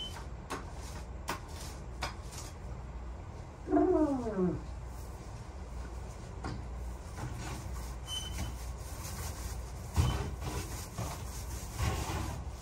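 Paint roller on an extension pole rolling latex paint onto a closet wall, a steady low sound with a few sharp clicks from the pole and roller. About four seconds in there is one short whine that falls steeply in pitch.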